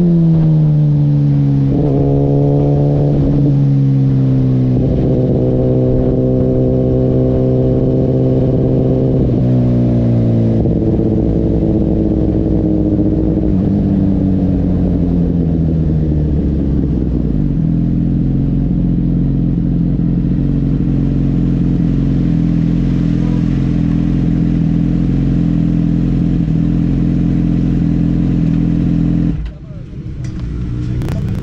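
Suzuki GSX-R's inline-four engine as the motorcycle slows off the track: the revs fall in steps, with a brief rise about two seconds in. It then runs at a steady low drone at pit-lane speed, and the sound drops away suddenly near the end.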